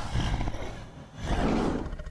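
A large creature's close, breathy roars: two rough blasts of breath about half a second each, the second a little after the first second, strong enough to blow the woman's hair about.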